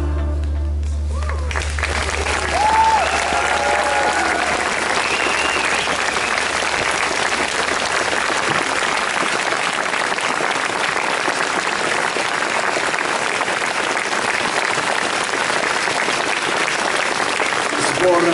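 Audience applauding steadily, beginning as the last note of the band's song dies away in the first second or so.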